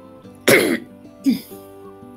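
A woman coughing twice, with her hand over her mouth, the first cough louder and the second short, over soft background music.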